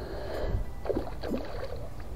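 Water sloshing and splashing in irregular swishes over a steady low rumble of wind on the microphone.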